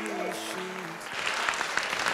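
The last held notes of a recorded pop ballad fade out, and about a second in an audience starts applauding.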